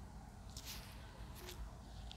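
Two faint, brief rustles of a disposable plastic glove, a little under a second in and again about a second and a half in, over low steady room noise.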